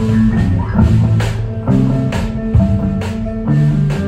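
Live rock band playing: electric guitars holding sustained low notes over a drum kit, with drum hits about twice a second.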